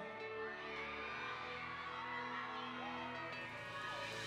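Live band holding soft, sustained keyboard chords between vocal lines, with faint crowd whoops.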